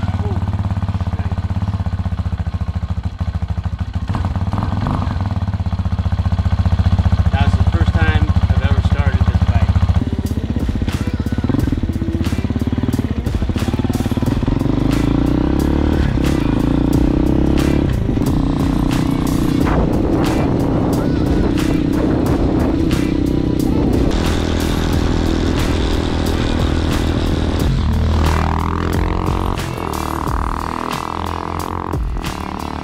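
X-Pro Hawk DLX 250 dual-sport motorcycle's fuel-injected 250cc engine idling steadily just after its first start. About ten seconds in it changes to the bike being ridden, the engine note climbing and dropping back several times as it pulls through the gears.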